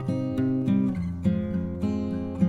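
Acoustic guitar music, with notes plucked one after another over a changing bass line.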